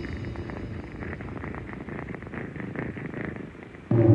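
Dark ambient noise music: a low rumbling drone laced with fast, irregular crackling clicks, growing quieter near the end.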